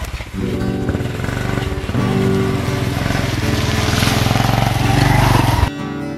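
Small motorbike engine running as the loaded bike rides along a dirt path, growing louder as it comes closer. It cuts off suddenly shortly before the end, where plucked acoustic guitar music begins.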